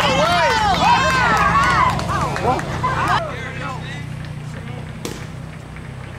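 Several high-pitched voices calling out over one another, ballfield chatter, for about the first three seconds, then dying away. A steady low hum runs underneath, and a single sharp knock sounds about five seconds in.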